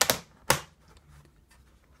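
Two sharp clicks about half a second apart: the portable monitor's case clicking onto the magnetic plates on the back of the laptop lid.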